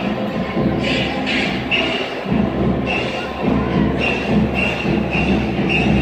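Music playing over a stadium public-address system, with a repeated short high note every half second or so, over the murmur of a crowd in the stands.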